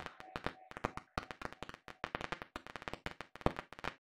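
A rapid, irregular run of sharp clicks and crackles, several to the second, with a faint held tone fading out in the first second.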